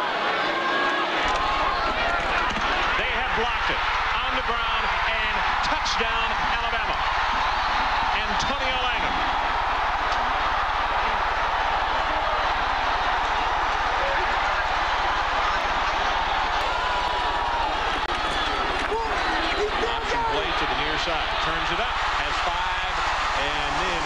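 Large stadium crowd cheering and shouting, a dense steady din of many voices. A steady low electrical hum comes in about a second in.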